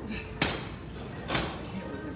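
Two sharp metal clunks about a second apart from a seated leg curl machine as its thigh-pad adjustment lever is set and locked in place.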